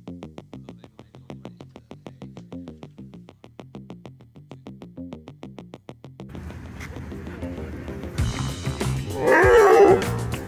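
Background music with a steady beat; near the end, loud growling from dogs in rough play, a Belgian Shepherd nipping at a Border Collie's hindquarters to make it run, herding play rather than a fight.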